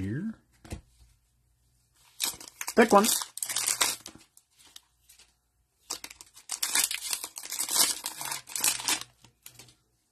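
Plastic trading-card pack wrapper (2022 Prizm football) crinkling and being torn open, in two stretches of rustling, about two seconds in and again from about six to nine and a half seconds in.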